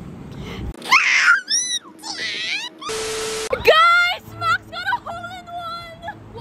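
A quick run of edited sounds rather than live sound: a swooping pitched sound, a short burst of hiss with a low steady tone, then a loud rising voice that holds a high wavering wail.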